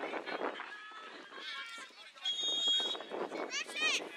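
Scattered voices of players and spectators across the field, with a short steady blast of a referee's whistle about two seconds in, lasting about half a second. High-pitched shouts follow near the end.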